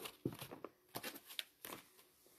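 Paper and a small notebook being handled: a handful of short, irregular rustles and light knocks.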